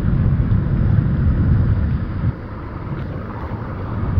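Road and engine noise of a moving car heard from inside the cabin: a low, steady rumble that drops suddenly a little over two seconds in and then slowly builds again.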